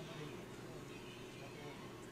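Faint, indistinct voices over a steady low hum of office room tone.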